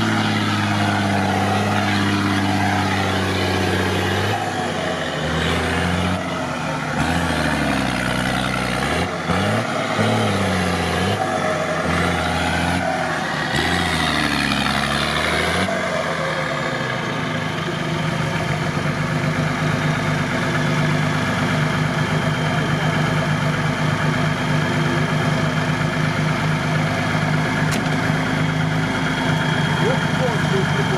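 Mercedes-Benz Unimog's diesel engine under load in deep mud, revving up and falling back about five times, then running at a steady pitch through the second half.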